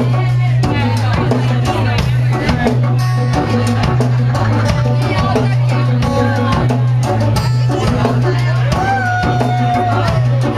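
Live band playing a song: a drum kit keeps a steady beat under a heavy bass line, with strummed acoustic guitar and keyboard, and a melody line that holds one long note near the end.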